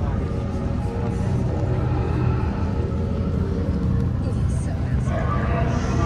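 Dark-ride show soundtrack: a deep, steady rumble with music running over it.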